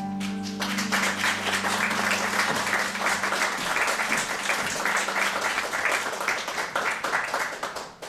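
The final held chord of a song's accompaniment rings and fades, and about half a second in a theatre audience breaks into sustained applause.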